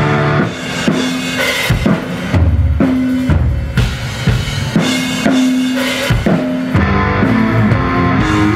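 Live rock band playing an instrumental passage on drum kit, electric guitar and bass guitar, with the drums prominent: held bass and guitar notes cut by repeated accented drum hits.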